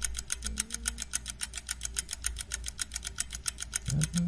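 A rapid, perfectly even ticking, about nine ticks a second, over a steady low hum.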